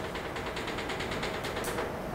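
Chalk on a blackboard laid down in quick short dashes, a rapid, even train of light taps and scratches, several a second, as a dashed circle is drawn.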